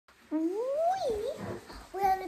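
Young girl's voice: one drawn-out call that slides up in pitch, dips, and rises again.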